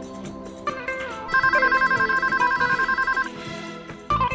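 Mobile phone ringing with an electronic ringtone: a rapid warbling trill between two pitches, lasting about two seconds, over guitar background music.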